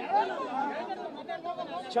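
Men's voices talking quietly, with overlapping chatter.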